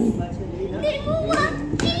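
Children's high voices calling out excitedly in a room, with a sharp click near the end.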